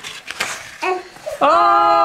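A long, drawn-out, steady "Ohhh" of delight as a baby's inked footprint on paper is revealed, starting about one and a half seconds in, after soft handling sounds of the paper.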